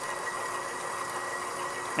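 KitchenAid stand mixer motor running steadily while kneading pizza dough at raised speed, with a faint steady high whine.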